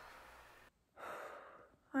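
Faint room hiss that cuts out abruptly, then a short audible breath from a young woman about a second in, just before she speaks.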